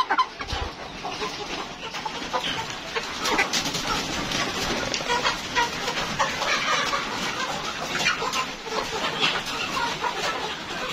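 A flock of young Rainbow Rooster chickens clucking steadily, with many short sharp taps throughout.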